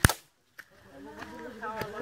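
A single sharp crack at the very start, cut off into a brief dead silence, then voices talking.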